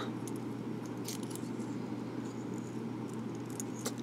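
A few faint clicks and light handling noises of a metal multi-function pen being pulled apart, its inner refill mechanism drawn out of the barrel, over a steady low room hum.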